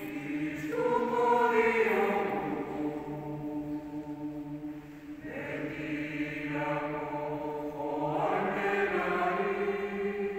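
Mixed choir of men and women singing unaccompanied, holding sustained chords. The sound swells about a second in, eases off around the middle and swells again near the end.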